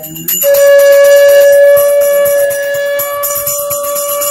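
A conch shell (shankh) blown in one long, steady, unwavering note that starts about half a second in and is held on past the end, loudest at first. It is sounded for the aarti, over a puja hand bell ringing continuously.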